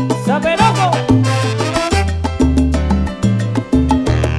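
Salsa orchestra playing an instrumental passage: a trumpet, trombone and saxophone section over a moving bass line and Latin percussion, with no vocals yet.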